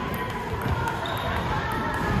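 Table tennis ball clicking off the paddles and table during a rally, a few sharp ticks over a steady murmur of voices in a large gym.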